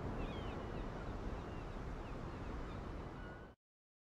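Quiet outdoor ambience: a steady rushing background with faint, short bird chirps, fading out to silence about three and a half seconds in.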